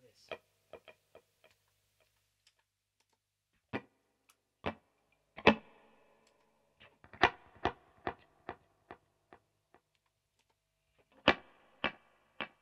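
Electric guitar playing short, sparse plucked notes through delay pedals, each note followed by evenly spaced echo repeats that fade away, about two repeats a second near the end.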